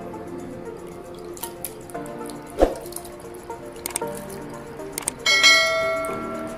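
Water dripping and splashing as raw prawns are washed by hand in a glass bowl, over background music. A sharp click comes about two and a half seconds in, and a bright bell-like notification chime rings out near the end, from a subscribe-button sound effect.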